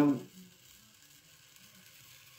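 A faint, light sizzle as a hot soldering-iron tip, set to about 400 degrees, is drawn slowly through polystyrene-type foam, melting out a channel.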